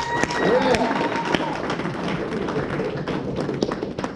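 Audience applauding, many irregular claps over a murmur of voices, with a held high tone through the first second and a half.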